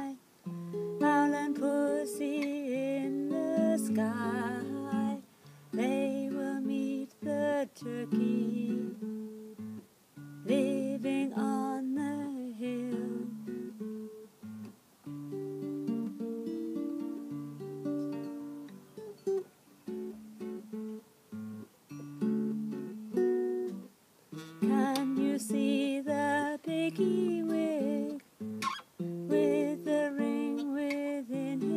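Acoustic guitar picked slowly as a lullaby accompaniment, with a woman singing over it in the first seconds, briefly around the middle, and again near the end. The stretch between is guitar alone.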